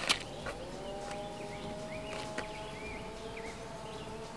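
Outdoor ambience: a sharp click right at the start, then a steady drone of several held tones that rises slightly as it sets in. Scattered short bird chirps sound over it.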